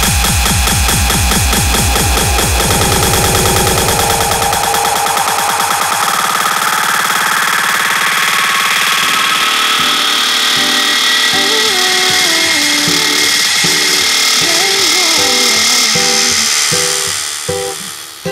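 Electronic dance music mixed live on a DJ controller. A techno beat with a heavy kick and bass drops out about four and a half seconds in, leaving a rising sweep and a gliding synth melody. The music dips in level near the end as the mix moves on.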